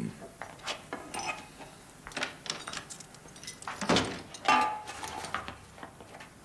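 Kitchen clatter: scattered knocks and clinks of dishes and things being handled at a counter and refrigerator, the loudest about four seconds in.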